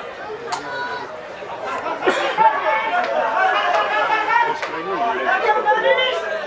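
Several voices on a rugby field calling and shouting over one another, indistinct, getting louder about two seconds in, with a couple of sharp knocks among them.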